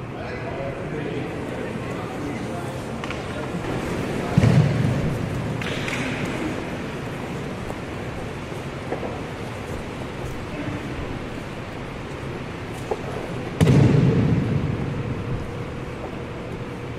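Two heavy thuds of a body hitting the mat as an aikido partner is thrown and takes a breakfall, about four seconds in and again near the end. Each thud rings on briefly in a large hall.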